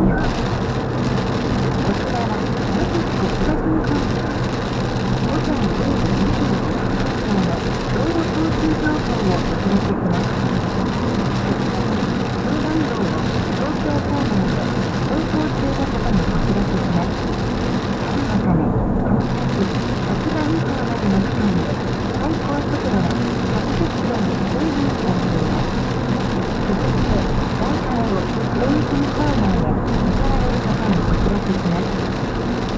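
Steady road and tyre noise heard inside a car cabin cruising on a rain-wet expressway, with muffled talk underneath.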